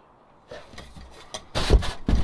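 Bumps, knocks and rustling right at the microphone, as the camera is handled and moved. The sound starts faintly about half a second in and turns loud and dense in the second half.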